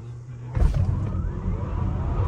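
Lucid Air electric sedan launching hard from a standstill in launch mode, heard from inside the cabin: about half a second in, a sudden surge of tyre and road rumble starts, with the electric motors' whine rising in pitch as the car accelerates. The front tyres are spinning for lack of traction.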